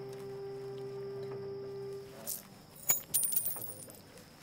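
A held low musical note that stops about two seconds in, followed by a few soft knocks, a sharp click and a short, bright metallic jingle that rings and fades near the end.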